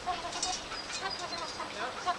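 Chickens clucking, a string of short calls one after another.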